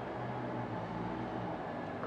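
Steady low hum under an even background noise, the room ambience of a busy fish auction hall, with no distinct event.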